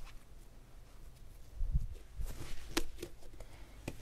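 Quiet handling sounds of yeast dough being gathered and shaped into a ball by hand on a countertop, with a dull thump a little before halfway and a few faint clicks after it.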